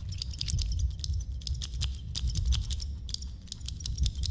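Rapid, irregular clicking and crackling, several clicks a second, over a steady low rumble: film sound effects and ambience.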